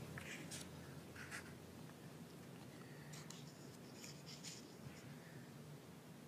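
Faint rustling of paper sheets being handled and turned, in two brief spells: in the first second and a half, and again from about three to four and a half seconds in.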